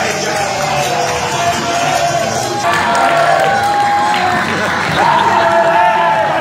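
Live wrestling-show crowd shouting and cheering over music playing in the hall, changing abruptly to a louder stretch about two and a half seconds in.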